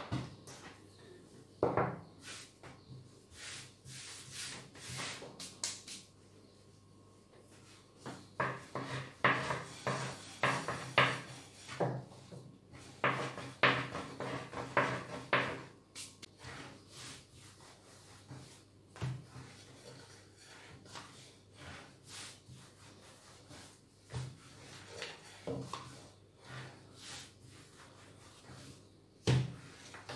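Irregular taps, knocks and rubbing of hands patting and pressing a ball of börek dough flat against a floured countertop. The strokes come thickest in the middle stretch.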